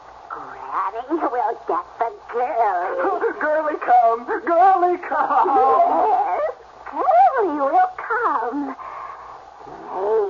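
A high-pitched voice making wordless or unintelligible sounds, its pitch swooping widely up and down. It breaks briefly after about six and a half seconds and dies away near the end.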